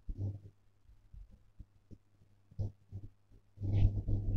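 Pause in a voice-over: a steady low hum with a few faint short noises, and the voice coming back in near the end.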